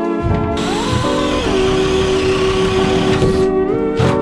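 A power drill running steadily for about three seconds, starting about half a second in, over guitar-based background music.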